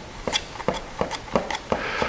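Breather adapter being screwed by hand into a twin-SU-carburettor airbox base: a run of light clicks and scrapes, about four a second, as the threads and fingers work the part.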